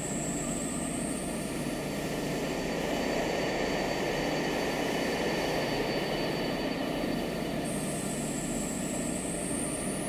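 Beatless electronic music passage: a steady wash of synth noise with a faint high whistling tone that dips and rises near the start and again near the end.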